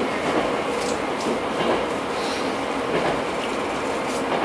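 Steady running noise of a Tango Kuromatsu diesel railcar heard from inside its passenger cabin, with wheel and rail noise.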